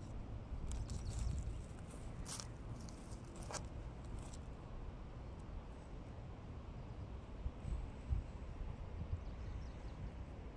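Fingers handling earrings right against an AirPods earbud microphone: close, muffled rubbing and scraping with a couple of sharp clicks about a third of the way in, over a steady low rumble.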